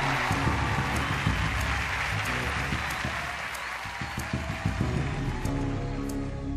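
Audience applause over background music, with the applause thinning out over the first few seconds while the music carries on.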